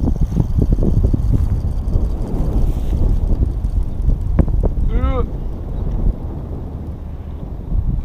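Heavy wind buffeting the microphone, with a run of soft knocks in the first few seconds and a brief voice-like hum about five seconds in.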